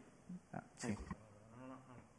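Low room tone with a few soft voice sounds from the debater at the microphone: a short murmur about a second in and a faint hummed hesitation near the end, as he searches for his next words.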